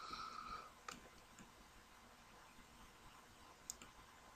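Near silence with a few faint computer mouse clicks, one about a second in and another near the end, and a short faint hum at the very start.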